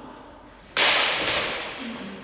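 A single sharp crack from a longsword strike during sparring about three quarters of a second in, trailing off over about a second in the echo of the hall.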